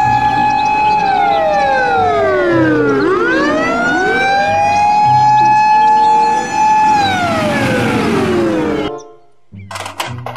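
Fire engine siren wailing: a steady high tone that sweeps slowly down and back up, holds, then falls again, cutting off suddenly near the end.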